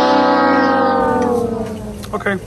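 A long, loud, brass-like note, added as an edited comic sound effect. It is held and slowly falls in pitch, fading out near the end.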